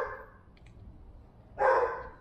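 A dog barking twice: one short bark right at the start and a second about a second and a half in.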